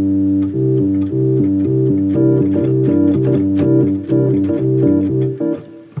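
Electronic organ playing sustained chords, with the bass alternating between two notes, the root and the fifth, about twice a second under held upper chord tones. The playing stops shortly before the end.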